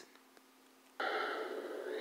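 About a second of near silence, then the film's soundtrack cuts in suddenly as playback resumes: a steady hissing background sound.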